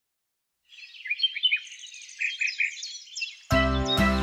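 Birds chirping and twittering in quick high calls, starting about a second in after silence; music with a regular beat comes in near the end.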